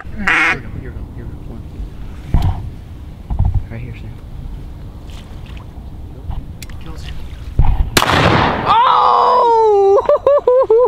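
Duck call blown loudly near the end: a raspy blast, then one long quack falling in pitch. Under it runs a low rumble with a few soft bumps.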